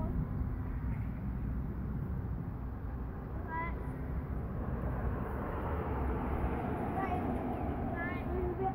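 Faint distant boys' voices calling out briefly, once about three and a half seconds in and again near the end, over a steady low rumble of outdoor noise.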